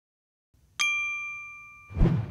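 A single bright ding from a logo-reveal sound effect, struck a little under a second in and ringing out as it fades, after a moment of silence.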